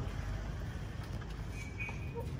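Outdoor ambience while walking along a paved side path: a steady low rumble, faint footsteps, and a brief bird chirp near the end.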